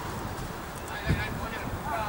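Players shouting to each other across a football pitch: high-pitched calls in the second half, with a dull thump about a second in.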